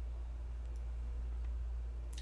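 Room tone in a pause between words: a steady low hum with a couple of faint clicks.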